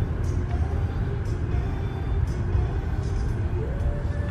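Steady low rumble of a car's interior, with quiet music playing over it.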